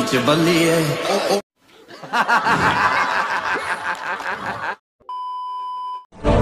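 A voice over music at the start, cut off abruptly, then about three seconds of rapid, repeated laughter, followed by a steady one-second beep tone near the end.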